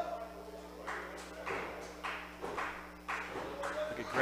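Small arena crowd clapping in a rhythm, about two or three claps a second, starting about a second in, over a steady electrical hum.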